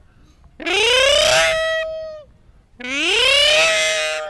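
A voice imitating a ringing telephone: two long calls that swoop up and then hold a steady pitch, the first about half a second in, the second near the end.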